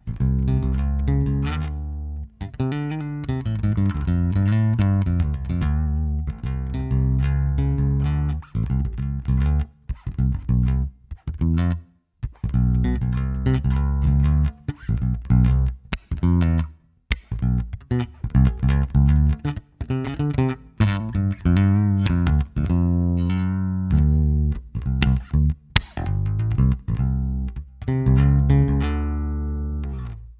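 Ibanez ATK810 active four-string electric bass played solo through an amp on its neck pickup alone, with the treble boosted all the way up: a run of plucked bass lines with bright, sharp note attacks and a few brief pauses.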